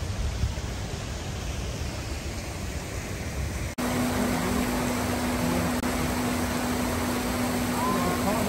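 Shallow river rushing over rocks in rapids: a steady, even noise that comes in abruptly about four seconds in. Before it there is fainter outdoor background noise.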